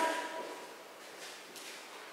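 A couple of faint steps of heeled dance shoes on a hard floor during a line-dance walk-through, the tail of a voice fading out at the very start.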